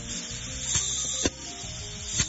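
Pneumatic solenoid valve clicking as it switches, with compressed air hissing out through brass sintered exhaust mufflers. A sharp click comes a little over a second in, and the hiss drops after it. Background music plays underneath.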